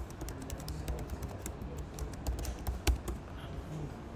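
Typing on a computer keyboard: a quick, uneven run of key clicks, with one louder keystroke about three seconds in.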